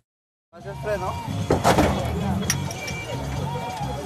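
Roadside field sound after half a second of silence: several people talking faintly, over background music, with one sharp knock about one and a half seconds in.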